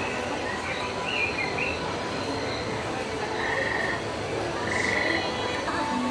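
Frogs calling: two short, pulsing trills about a second apart over a steady outdoor background hum.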